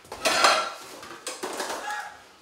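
Metal pots and pans clattering as they are pulled down from the top of a refrigerator: a loud, ringing clatter about a quarter second in, then a second, smaller clatter about a second later.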